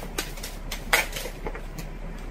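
Tarot cards being handled and shuffled: a few short, sharp clicks and snaps, the loudest about a second in.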